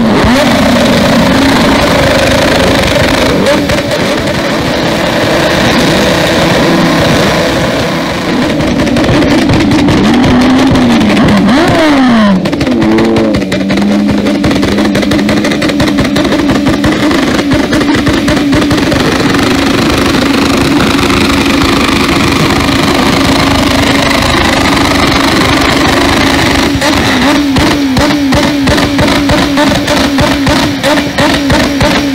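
Motorcycle engines revved hard against the rev limiter, a loud stuttering drone as the ignition cut keeps bouncing the revs. About ten seconds in the revs sweep up and down and drop suddenly, then climb back to the limiter.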